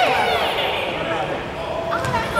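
Indistinct voices of people talking in a gymnasium, loudest at the start and dropping off in the middle.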